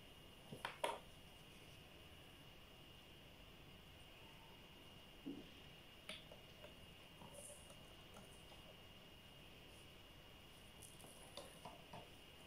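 Near silence broken by a few faint clicks and taps of a spoon and plastic bottle as salt is spooned in, the sharpest pair just under a second in.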